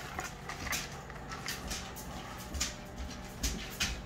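Clear plastic clamshell packaging being handled: faint, irregular crinkles and clicks, with a few soft knocks near the end.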